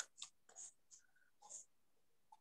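Near silence with faint, irregular short scratches and rustles, several a second.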